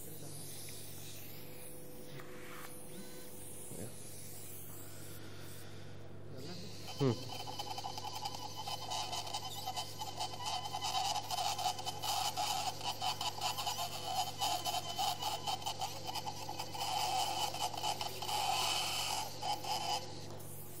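Surgical bone drill with a cutting burr starting about seven seconds in and then running with a steady high whine and irregular crackling as the burr works over the surface of a cadaveric temporal bone.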